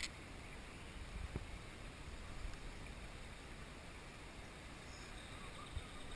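Shallow river water rushing over a riffle around a kayak, a faint steady sound, with one light knock about a second and a half in.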